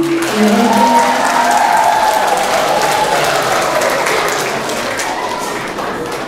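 Audience of children and adults clapping in a large hall, the applause slowly tapering off toward the end.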